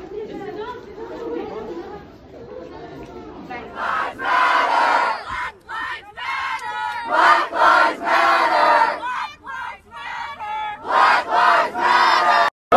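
A crowd of protesting students shouting together in several loud bursts, starting about four seconds in, after a few seconds of indistinct talking.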